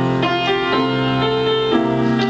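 Piano accompaniment playing a run of chords, a new chord sounding about every half second.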